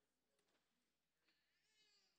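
Near silence: a pause in amplified speech, with no audible sound.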